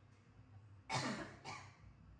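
A woman coughing twice in quick succession, the first cough louder, with a falling voiced tail.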